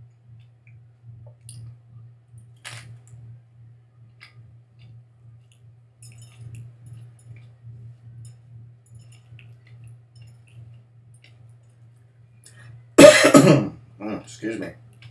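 A man coughs once, loudly, about a second before the end, after a long stretch of faint clicking mouth sounds from eating a raw green chile pepper. A steady low hum runs underneath.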